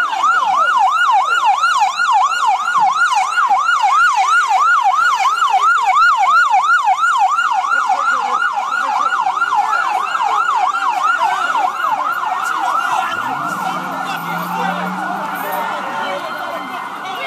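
Police car siren on a fast yelp, its pitch sweeping down and back up about two and a half times a second, loud. Near the end the sweeps flatten into a steadier tone.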